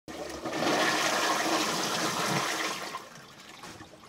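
A flush toilet with a wall-mounted high cistern, original to the 1963 building, flushing: a rush of water that dies away after about three seconds.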